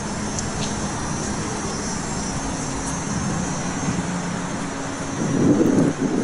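A steady low mechanical drone with a faint hum over outdoor background noise, swelling louder briefly near the end.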